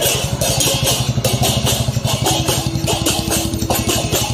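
A motorcycle engine running at low speed close by, over rhythmic jingling percussion struck about four times a second. A steady musical tone is held through the second half.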